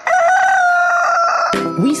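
A rooster crowing once, one long call that falls slightly in pitch, used as the wake-up sound effect at the start of a morning-show promo. Music comes in near the end.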